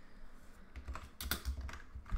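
Typing on a computer keyboard: a quick run of keystrokes starting just under a second in.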